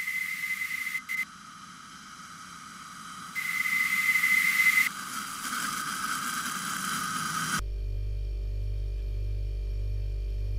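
Sound-design static: two loud bursts of hiss, each carrying a steady high whistle, over a quieter crackling haze. About seven and a half seconds in it cuts off suddenly and a low steady electrical hum takes over.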